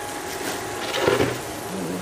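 Shredded Brussels sprouts frying in oil in a stainless steel skillet, a steady sizzle, with a single knock about a second in.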